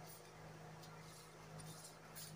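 Near silence: a steady low hum, with a few faint, brief rustles as hands shift a wooden ruler over sheer fabric.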